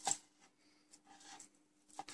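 Kitchen knife chopping grilled pork cheek into small cubes on a cutting board: one sharp chop at the start, faint cutting sounds about a second in, and a light knock near the end.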